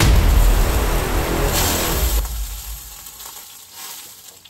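Steak searing in hot olive oil in a frying pan: loud sizzling that starts abruptly, peaks about a second and a half in, then dies down over the last two seconds.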